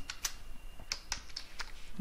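Computer keyboard being typed on: a run of separate keystroke clicks, a few each second.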